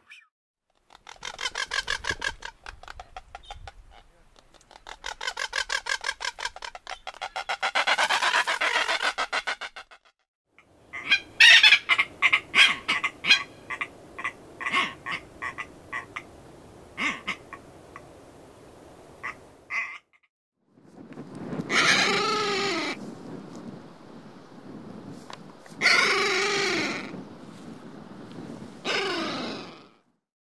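Seabird calls from several spliced recordings: fast rattling calls of a blue-footed booby for roughly the first ten seconds, then a red-tailed tropicbird's sharp, clipped calls followed by long harsh calls that fall in pitch.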